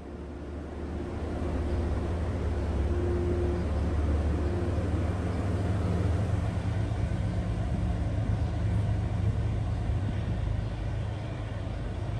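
MPI HSP46 diesel-electric locomotive powering up to pull a commuter train away from a station, its engine running hard with a deep drone over the rumble of bi-level coaches rolling past on the rails. The sound swells over the first two seconds, then holds steady.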